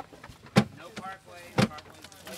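Two sharp knocks about a second apart as objects are handled and bumped on the wooden galley shelves of a teardrop trailer.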